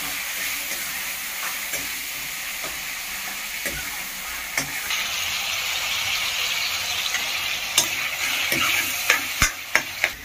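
Chopped tomatoes sizzling in oil in a steel kadhai while a steel ladle stirs them, with sharp clicks and scrapes of the ladle on the pan that come more often near the end. The sizzle grows louder about halfway through.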